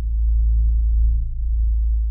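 A loud, very deep, steady bass drone held as a long sustained note, easing off slightly towards the end.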